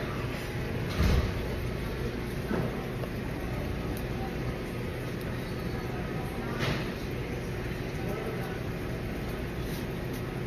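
Steady low background hum of a restaurant room, with faint voices now and then and a short low thump about a second in.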